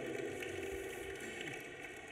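Faint applause from an audience, dying away.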